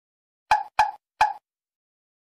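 Three short, pitched pop sound effects in quick succession, each dying away within a fraction of a second.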